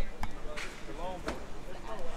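Indistinct voices of people talking, broken by two sharp knocks, one just after the start and one just past a second in.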